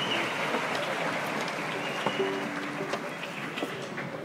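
Audience applauding and gradually dying away, with a few brief soft tones partway through.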